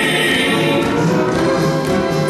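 A gospel vocal trio holds a final sung note in close harmony, fading about half a second in. Orchestral accompaniment then carries on into an instrumental break between verses.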